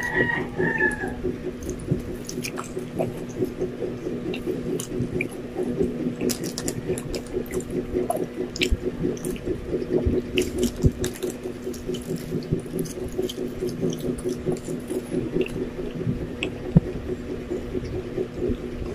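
Close-miked wet chewing of a sandwich: a steady run of moist smacking and squishing mouth sounds, over a steady low hum.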